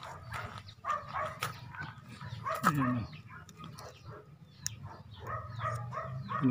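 A dog barking several times on and off, over a steady low hum.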